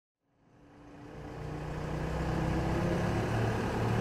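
Engine idling steadily with a low hum, fading in from silence over the first two seconds.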